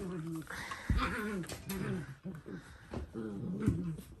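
Dalmatians whining and grumbling, a run of short bending calls about every half second.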